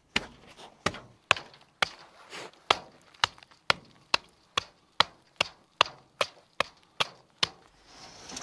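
A metal chopping blade striking packed ice and frozen ground, chipping the ice away in quick, sharp blows about two a second, coming a little faster in the second half.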